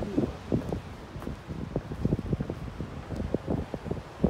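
Wind buffeting the microphone in uneven gusts, a rumbling noise that rises and falls.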